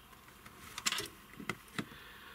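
Small clicks and rustles of fingers handling an electrolytic capacitor and the test-lead clips of a capacitance meter: a cluster of clicks about a second in, then two more single clicks.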